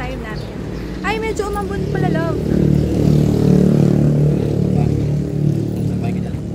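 A motor vehicle's engine running close by, growing louder about halfway in and easing off near the end, after a few brief snatches of a voice.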